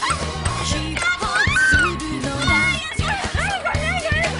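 Background music with a steady bass line, over high-pitched squeals and laughter from young women playing air hockey, with a few sharp clacks.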